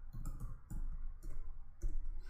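Computer keyboard being typed on: about half a dozen irregular keystroke clicks as a line of code is entered.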